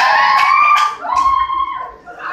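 A man's voice drawing out a long note that rises and holds, breaks about a second in, then holds a second long note, over crowd noise.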